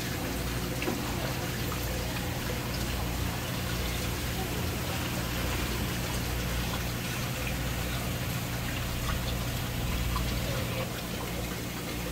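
Live fish tank's water circulation and aeration: a steady rush of running water over a low, constant pump hum.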